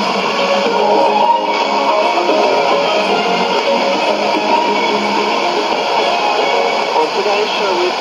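Guitar music from a shortwave AM broadcast, heard through a portable receiver's speaker with a steady band-noise haze and a narrow, muffled top end.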